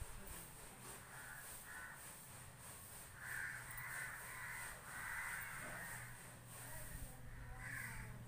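Crows cawing in a series of harsh calls, faint at first and clearer past the middle.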